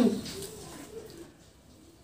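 A woman's closed-mouth "mmm" of appreciation while chewing a mouthful of food, loud at the start and falling in pitch, then trailing off into a faint low murmur within about a second.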